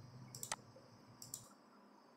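Two faint computer mouse clicks about a second apart, each a quick pair of ticks as the button is pressed and released.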